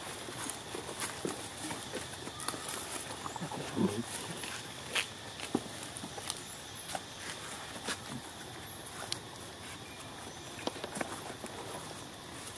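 Outdoor ambience: a steady hiss with scattered light clicks and rustles, and one brief low vocal sound about four seconds in.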